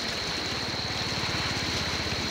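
Floodwater rushing steadily, with a small engine's low, rapid pulsing running underneath from about half a second in, and a steady thin high-pitched whine.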